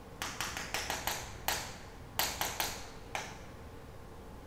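Chalk tapping on a chalkboard as it is written on: about ten quick, irregular sharp taps, bunched in the first second and a half with a few more later.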